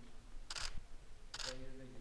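Camera shutters firing in two short bursts, a little under a second apart, over faint low voices.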